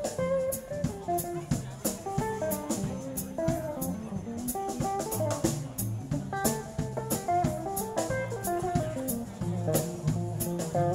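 Live band playing: a guitar melody over bass and a drum kit, with cymbal strikes keeping a steady beat about twice a second.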